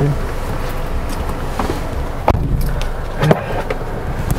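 A passenger getting into a car's front seat: clothing and bag rustling, with a few knocks and bumps as she settles, the loudest about three seconds in, over steady car-cabin noise.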